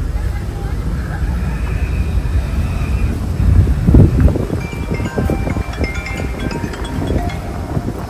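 Wind buffeting the phone's microphone over the low rumble of a slowly moving car, with the loudest gust about four seconds in.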